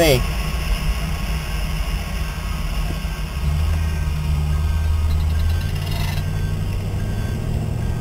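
A Lincoln car driving on a sandy dirt road, heard from inside the cabin: a steady low drone of engine and tyres that grows louder about three and a half seconds in and eases off again near six seconds.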